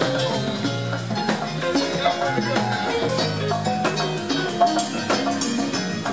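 Live band playing an instrumental dance groove: an electric bass line under a drum kit and hand drums, with keyboard notes above.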